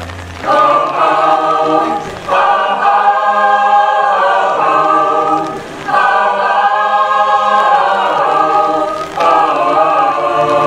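Mixed choir of men and women singing held chords in phrases, with short breaks between phrases every three to four seconds.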